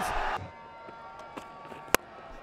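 Crowd noise in a cricket stadium that cuts off shortly in, leaving a quiet, steady ground ambience. Near the end comes one sharp crack of a cricket bat striking the ball as the batter plays a lofted shot.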